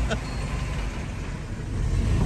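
Low, steady rumble of a 1949 Austin A40's 1.2-litre four-cylinder engine running.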